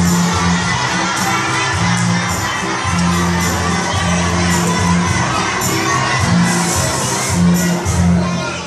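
A group of young children singing and shouting along together over backing music, with low bass notes that change every second or so.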